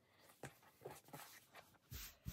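Faint, soft rustles of a flannel shirt being smoothed flat by hand on a cutting mat, a few light brushes of fabric.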